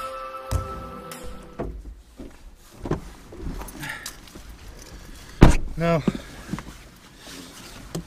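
Background music ends about a second and a half in. It gives way to scattered knocks and rustles inside a parked car as a passenger gets in, with one loud sharp thud about five and a half seconds in.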